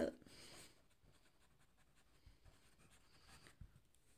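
Marker pen writing out a word, faint scratching strokes.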